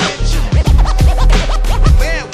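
Hip hop beat of kick drum and bass with DJ turntable scratching: a record sample is pushed back and forth in quick, repeated up-and-down pitch sweeps from about half a second in.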